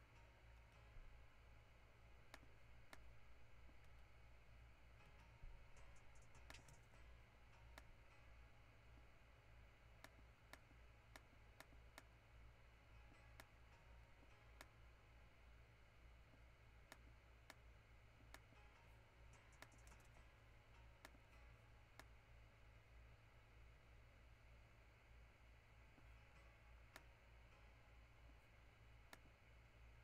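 Near silence: faint, scattered computer-mouse clicks, a few every several seconds, over a steady low electrical hum.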